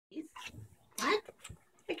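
Chocolate Labrador retriever giving a short, soft whine that rises in pitch about a second in, with a few faint breathy sounds around it. This is the dog's quiet 'talking' on cue.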